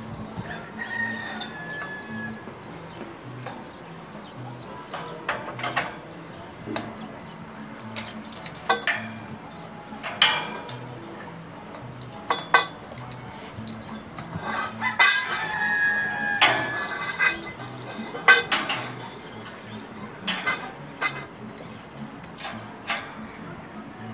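Steel lattice tower and gin pole clanking as a climber works on them: irregular sharp metallic knocks every second or two, with a denser run of them near the middle.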